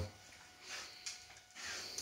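Dalmatians sniffing faintly at the floor for spilled gravy-bone crumbs, in two soft snuffles.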